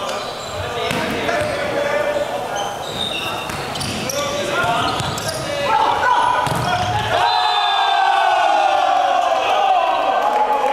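Volleyball rally in a sports hall: knocks of the ball being played, with players shouting. About seven seconds in, a loud burst of sustained shouting and cheering from several players as the point is won.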